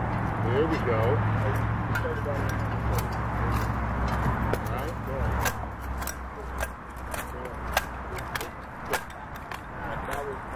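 Outdoor ambience: a low steady hum that fades out about seven seconds in, faint distant voices in the first half, and scattered light clicks and taps through the middle.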